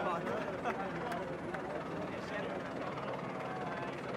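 A man speaking with other voices around him, over a steady droning background.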